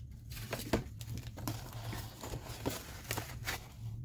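Scattered light clicks, taps and rustles of crafting supplies being handled: a thin metal cutting die, its clear plastic packaging and a sheet of cardstock.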